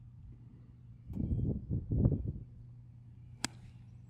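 A seven iron striking a golf ball: one sharp, short click about three and a half seconds in. Before it, in the middle, comes a louder burst of low rumbling noise, and a steady low hum runs underneath.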